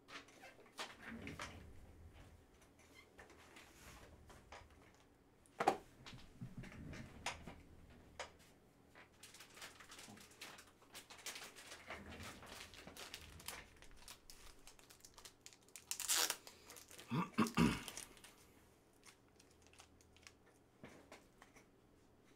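A sealed UFC Chrome Delight trading-card box being opened by hand: intermittent crinkling and tearing of its wrapping and cardboard. There is a sharp snap about six seconds in, and a louder run of crinkling and rustling a little after the middle.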